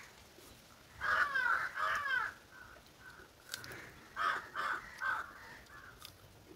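A crow cawing: two harsh caws about a second in, then a run of three more about four seconds in.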